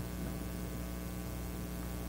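Steady electrical mains hum with a faint hiss from the microphone and sound system.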